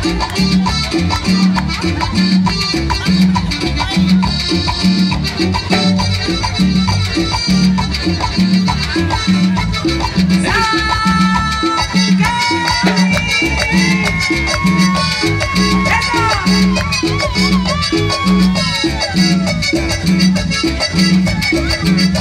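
Live Latin dance band played through PA speakers: a steady beat with keyboards and percussion. About halfway through, a held, wavering melody line rises over it for several seconds.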